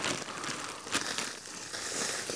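Clear polythene sheet crinkling as it is gripped and lifted, with loose sand and substrate sliding off the foam, and sharper crackles about a second in and near the end.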